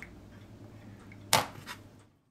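A single sharp click of a small hard object, about a second and a third in, over a low steady hum.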